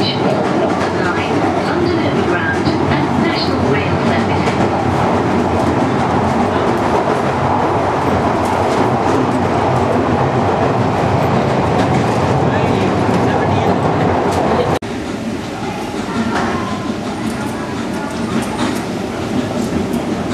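London Underground Victoria line train running, heard from inside the carriage: a loud, steady rumble and rattle of wheels and motors. About three-quarters of the way through, it cuts off suddenly to a quieter background with a few faint voices.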